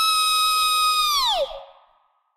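A woman's voice holding a high, steady squeal-like note, which drops in pitch and fades away about a second and a half in.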